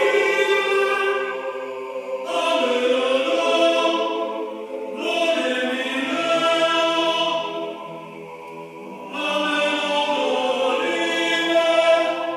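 Male vocal ensemble singing Gregorian-style chant unaccompanied, several voices in sustained harmony. The singing comes in long held phrases, with new phrases entering about 2, 5 and 9 seconds in, carried by the reverberation of a church.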